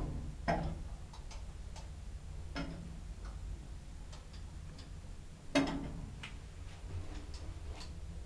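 Sabiem traction elevator riding up, heard from inside the car: a steady low hum from the drive machine, with sharp clicks every two to three seconds as the car passes floors. The loudest click comes a little past halfway.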